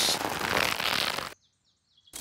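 Cartoon whirring of a small rubber-band-powered toy aeroplane's propeller, which cuts off suddenly just over a second in. A few faint bird chirps follow in the brief quiet.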